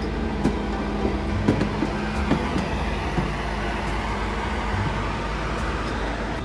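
A steady low engine-like rumble and hum, with a few sharp knocks of footsteps on stairs in the first half.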